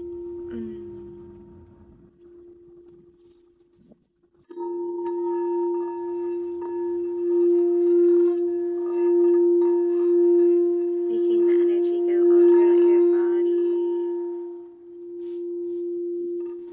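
Pink crystal singing bowl tuned to the heart chakra, its single steady tone dying away over the first few seconds. About four and a half seconds in it is struck with a wand and then rimmed, so the tone swells loud again and rises and falls gently in level.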